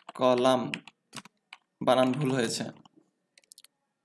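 Computer keyboard typing: a few separate keystrokes between stretches of speech, then a faint quick run of keys near the end.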